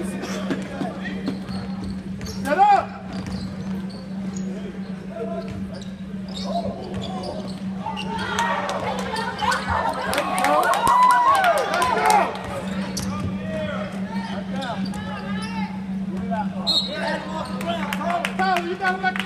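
A basketball being dribbled on a hardwood gym floor during live play, mixed with players' and spectators' voices echoing in the hall. The ball strikes come thick around the middle, with a loud shout near the start, over a steady low hum.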